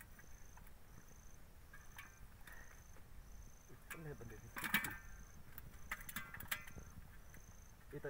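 Faint high insect chirping, one short chirp a bit more than once a second, over quiet outdoor ambience, with a few short spoken words about halfway through.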